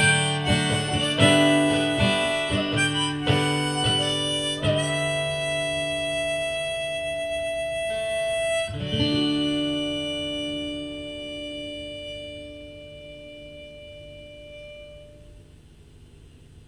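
Harmonica and acoustic guitar playing the closing bars of a song: quick notes and strums, then a long held note, then a last chord about nine seconds in that rings and slowly fades away.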